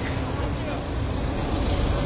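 Steady low street noise from vehicle engines running nearby, with a faint steady hum.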